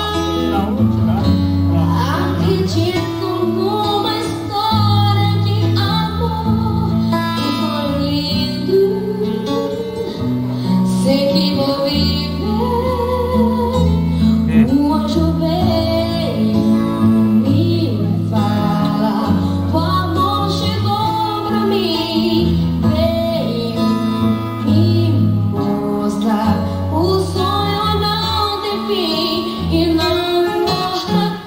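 A boy of about twelve singing a song into a microphone, his voice carrying a wide-ranging melody with vibrato on held notes, accompanied by a strummed acoustic guitar.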